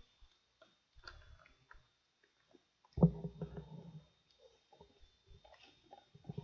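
Quiet room noise in a presentation room: faint scattered clicks and shuffles over a steady faint high whine, with one sudden low thud about three seconds in that dies away within a second.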